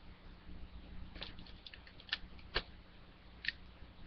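Plastic DVD case being handled and opened: a few small, sharp clicks and taps, spread over the few seconds.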